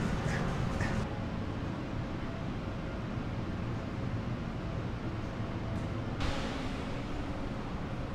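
Steady low rumbling room tone with a light hiss and no distinct events; the hiss changes about a second in and again near six seconds.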